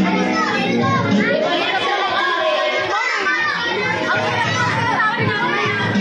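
A crowd of children chattering and shouting excitedly over one another, with music playing underneath.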